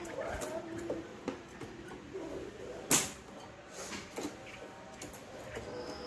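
A Chinese hwamei fluttering and hopping about a wire cage and onto a hand-held perch stick, making scattered light knocks and rattles, with one sharp knock about three seconds in.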